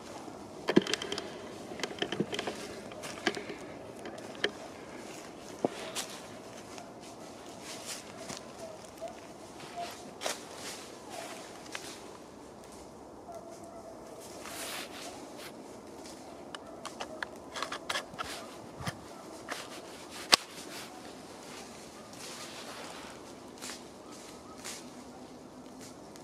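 Rustling and crackling of dry leaves, twigs and brush underfoot and against clothing as a hunter shifts and moves, with a scatter of small clicks and one sharper click about twenty seconds in.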